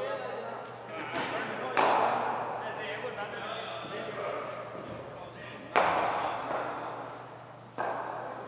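Hard cricket ball impacts in an indoor net hall: three sharp cracks, about two seconds in, about six seconds in and just before the end, each with a long echoing decay.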